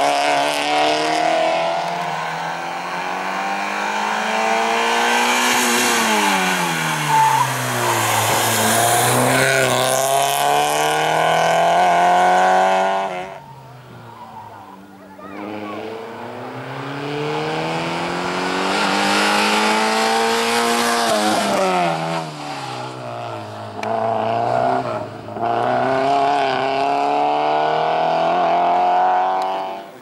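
A small hatchback race car's engine revved hard through a cone slalom, its pitch climbing and falling again and again as the driver accelerates and lifts between the gates. It falls away suddenly about thirteen seconds in, then climbs back up.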